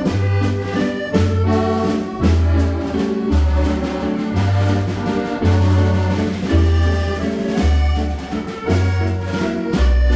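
Accordion playing a waltz, its melody over a deep bass note about once a second, with a drum kit and cymbal keeping time.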